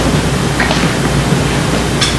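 A steady, loud hiss of noise with a low rumble underneath, filling the pause in the talk and cutting off as speech resumes.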